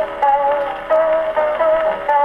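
Hawaiian guitar music from a Pathé vertical-groove record playing on an Edison disc phonograph. Held, ringing notes change every half second or so.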